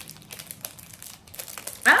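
Clear plastic wrapping crinkling as it is peeled off a container, a rapid scatter of small crackles; a voice starts just before the end.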